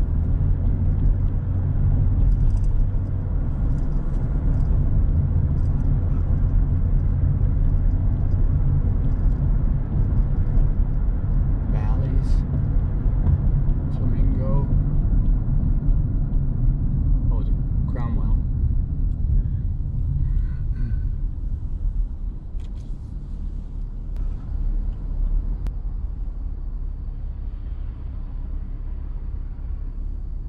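Steady low rumble of road and engine noise inside a car cabin with the windows up as it drives along a city street. The drone eases off in the last several seconds as the car slows toward an intersection.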